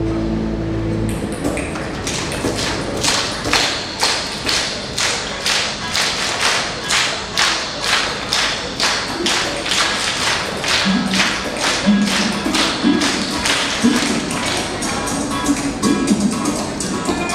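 A large children's choir clapping a steady rhythm in unison, about two claps a second. A held musical chord stops about a second in, and low pitched notes join the clapping from about eleven seconds in.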